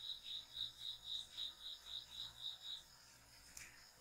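Faint insect chirping: a high pulse repeating about four times a second, stopping a little before three seconds in.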